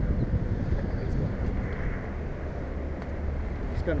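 Wind buffeting the microphone, a steady low rumble with a hiss, outdoors by the water.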